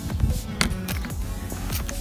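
Short squirts from a trigger spray bottle spraying degreaser onto a bicycle, mixed with handling rumble from the camera, over background music.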